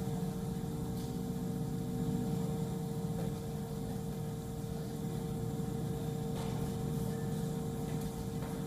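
Steady low rumble of idling police vehicles, with a faint constant hum tone running under it.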